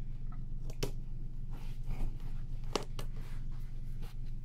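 Steady low hum with light handling noises: two sharp clicks, about a second in and near three seconds in, as a clear plastic catch cup is held and moved against a plastic tub enclosure.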